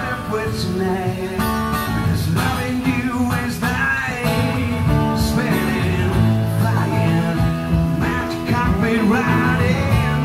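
Live country-folk music from a small acoustic band: acoustic guitar playing with a singing voice over it, steady and continuous.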